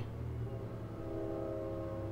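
A man's voice holding a long, level hesitation sound ("uhh") mid-sentence, starting about a third of the way in and quieter than his speech around it, over a low steady hum.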